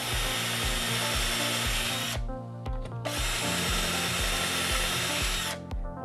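Cordless drill running in two steady bursts, about two and two and a half seconds long with a brief pause between, as it pre-drills two mounting-plate screw holes through a drilling template into a cabinet side panel. Background music with a steady beat plays underneath.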